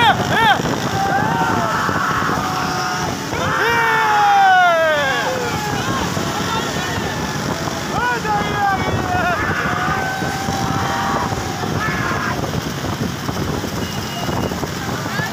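Several motorcycle engines running in a pack, with wind on the microphone, while people shout and whoop over them; a long falling yell comes about four seconds in.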